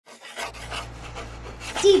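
Rhythmic breathy puffs like panting, about four a second, over a steady low hum that starts about half a second in. A voice begins right at the end.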